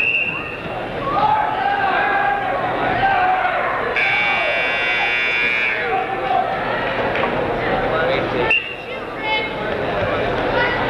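Crowd chatter and shouting in a gym, with an electronic timing buzzer sounding once for nearly two seconds about four seconds in.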